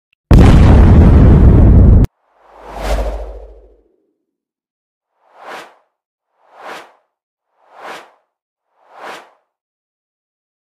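Intro sound effects for an animated logo and graphics: a very loud noisy burst lasting about two seconds that cuts off suddenly, then a whoosh with a low boom, then four short whooshes about a second apart.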